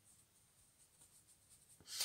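Faint, soft swishing of a make-up brush sweeping highlighter powder over skin.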